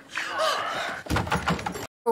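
A heavy slam, like a door banging shut, about a second in, followed by an abrupt cut to silence.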